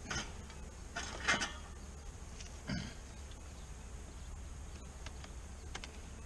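Wooden beehive being handled: a brief scrape about a second in and a short knock near three seconds, over a low steady rumble.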